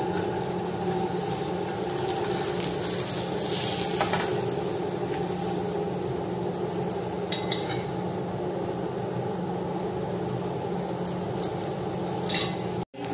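Paratha frying in oil on a flat pan: a steady sizzle, with a few light clinks of a utensil.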